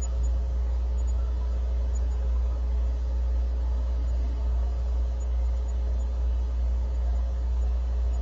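A steady low hum, the recording's constant background noise, with no speech over it.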